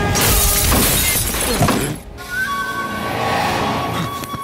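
Glass shattering in a long crash lasting about two seconds as a body smashes through a glass table, over dramatic film score. After the crash the music carries on with a held high note.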